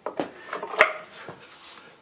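Small glass window panes being slipped into the wooden slots of a handmade birdhouse: light handling rubs with a few short clicks, the sharpest about a second in.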